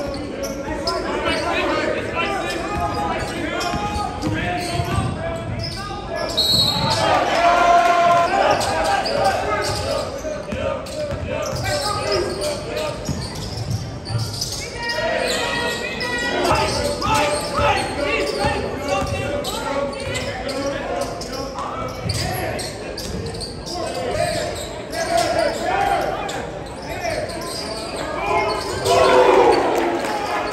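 Live game sound in a large gym: a basketball dribbling on the hardwood court, with the voices of players and spectators throughout.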